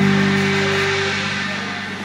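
A live band's closing chord ringing out and fading: held electric guitar and bass notes sustain, one of them dying away about halfway through, under a wash of high noise as the whole sound slowly decays.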